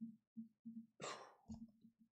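Near silence, with a faint breathy exhale about a second in.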